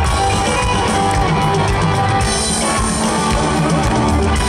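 Live rock band playing loud, with electric guitar and drum kit, heard as a live concert recording.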